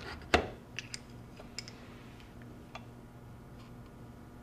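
Handling of a BYK-Gardner multi-blade cross-cut adhesion tester on a coated sample in a metal holder, just after the cut: one sharp click about a third of a second in, then a few faint ticks.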